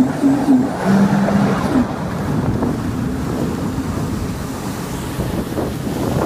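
Sea-Doo RXT-X 260 RS jet ski's supercharged three-cylinder four-stroke engine on the throttle, its pitch wavering, then backing off about two seconds in. After that, wind buffeting the microphone and water rushing past the hull take over.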